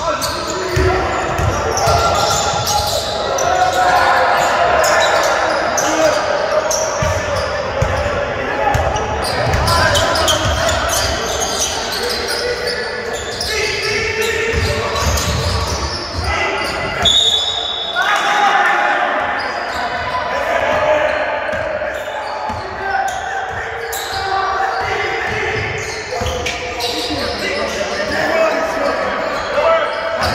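A basketball bouncing on an indoor court in repeated thuds, with voices echoing in the hall. A short high whistle blast, the referee's whistle, sounds about seventeen seconds in.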